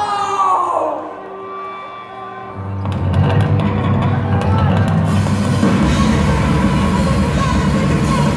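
Live heavy metal band through a PA in a large hall: a falling shouted voice opens, a few held notes ring over a quieter stretch, then the full band with drums comes in loud about three seconds in and runs on.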